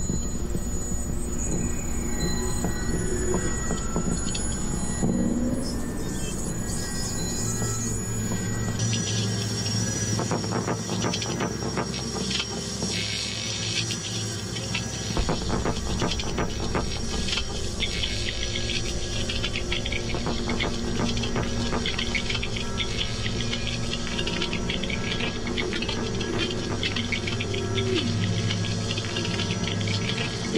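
Jean Tinguely's kinetic sculptures running: a continuous mechanical clatter of metal parts, many small irregular clicks and knocks over a steady low hum.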